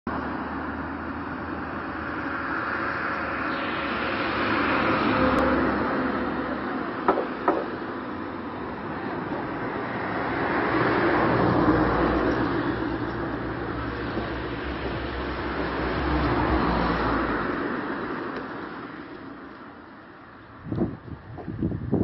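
Loud outdoor noise, with no voices, that swells and fades several times. There are two sharp clicks about seven seconds in and a few knocks near the end.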